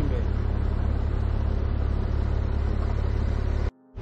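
Porsche 911 Turbo S's 3.8-litre twin-turbo flat-six idling, a steady low rumble. It cuts off suddenly near the end.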